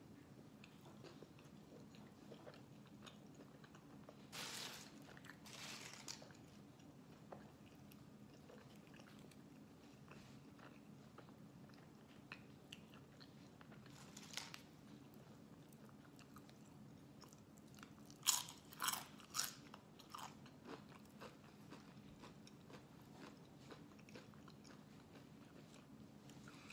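Faint chewing of a burrito and tortilla chips, with a few short crunches and, later on, a quick run of crisp crunches as chips are bitten. A steady low hum runs underneath.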